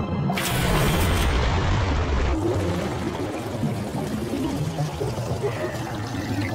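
Cartoon sound effect of rushing water from a whirlpool, loudest from about half a second to two seconds in and then quieter, over background music.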